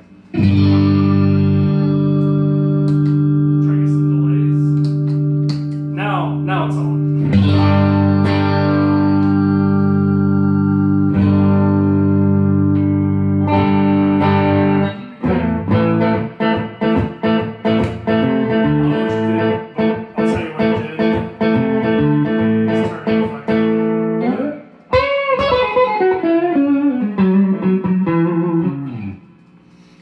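Sterling by Music Man Cutlass electric guitar played through an amp via a Vertex Steel String pedal, on the middle pickup position. Full chords are strummed and left to ring for several seconds at a time. About halfway through comes a run of quick picked notes, then a bent, wavering single-note phrase that slides down in pitch and dies away near the end.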